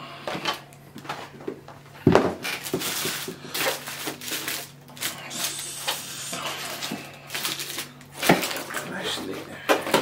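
Paper and foil fast-food wrappers crinkling and rustling as wrapped burgers and food are handled and moved about on a table, with two sharper knocks, about two seconds in and about eight seconds in, as things are set down.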